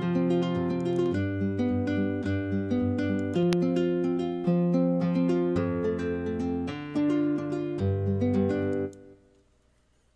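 UJAM Virtual Guitarist SILK nylon-string guitar plug-in playing a picked arpeggio pattern, its chords driven by MIDI from EZkeys 2 and changing about once a second. It stops about nine seconds in.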